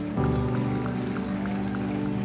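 Live worship band playing an instrumental passage between sung lines: a new chord comes in a moment in and is held steadily, with bowed violin among the instruments.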